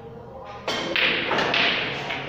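A snooker shot: a sharp knock about two-thirds of a second in, then further hard clicks as the cue ball strikes the reds and the balls knock together.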